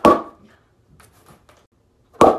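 A single sharp knock of a thin wooden board striking a person's head, ringing away briefly, followed by a few faint light taps.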